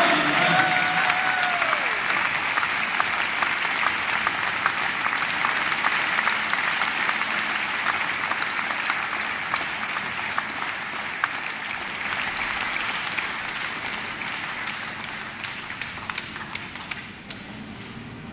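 Audience applause, many hands clapping, slowly fading away and dying out near the end.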